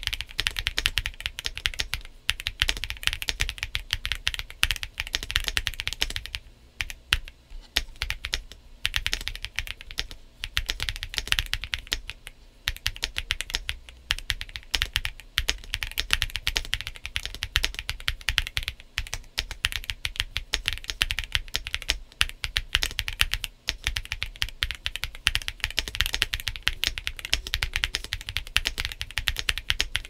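Continuous typing on a Cidoo V65, an aluminium gasket-mount 65% mechanical keyboard with Quark Matte linear switches and Cherry-profile PBT dye-sub keycaps: a dense stream of keystrokes broken by a few brief pauses.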